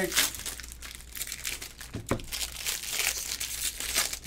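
Foil wrappers of 2022 Bowman Jumbo baseball card packs crinkling and tearing as the packs are ripped open, in irregular bursts.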